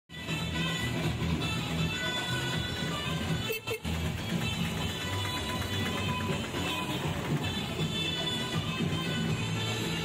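Music with a steady bass line and layered tones, dropping out briefly about three and a half seconds in.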